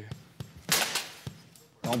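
A composite carbon-fibre hockey stick struck hard against the steel frame of a hockey net in an impact-strength test: one loud sharp crack less than a second in, with fainter knocks before and after it.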